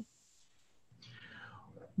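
Near silence, then about a second in a faint breathy sound whose pitch slides downward, just before a man starts to speak over the video call.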